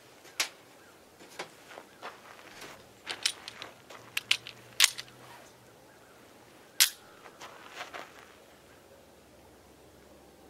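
Sharp metallic clicks and clacks from handling a Taurus G3C pistol and its parts, about a dozen in the first eight seconds, with the two loudest near the middle. No shot is fired.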